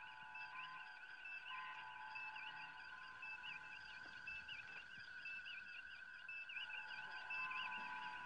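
Faint electronic starship-bridge ambience: steady held tones with short warbling computer chirps recurring about once a second.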